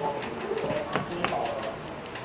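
Quiet classroom with a few light chalk taps on a blackboard and faint murmuring of voices.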